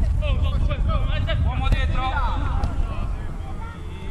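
Several people's voices calling out on a football pitch, distant and indistinct, over a steady low rumble.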